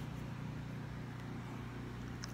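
A steady low hum with no other events.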